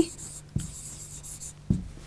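Chalk writing on a chalkboard: a faint scratching with a couple of light taps as letters are written.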